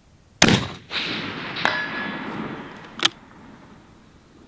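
A Sig Sauer Cross bolt-action rifle fires a single sharp shot, and the report trails off over about two seconds. About a second after the shot a faint, short ding sounds as the bullet rings the steel target. A sharp click follows near the end.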